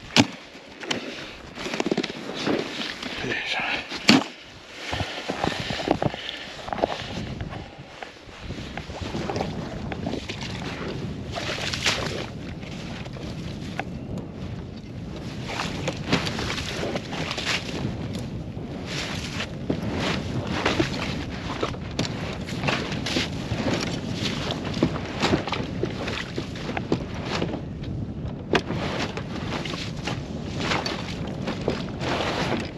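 Slush and packed snow crunching and scraping as a plastic Otter tow sled is worked by hand out of a slush-filled trench. Two sharp knocks stand out near the start and about four seconds in, and a steady low noise runs under the scraping from about eight seconds in.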